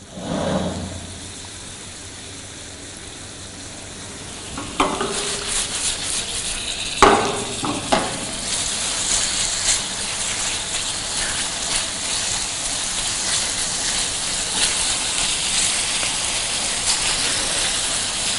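Marinated chicken pieces frying in oil and butter in a pan over a high gas flame, the sizzle growing louder after about four seconds. A spatula stirs the pieces, knocking and scraping the pan a few times.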